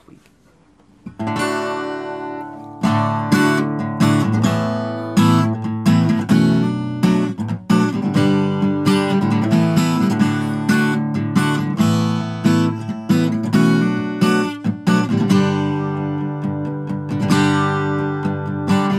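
Acoustic guitar strummed in a steady rhythm, a song's instrumental intro before any singing. It comes in about a second in and gets louder a couple of seconds later.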